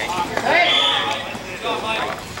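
Voices shouting and calling out around a dek hockey rink, loudest about half a second in, with a few light clacks of sticks and ball on the court.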